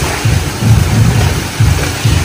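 Pool water splashing and churning just after two children jump in, over a loud, uneven low rumble.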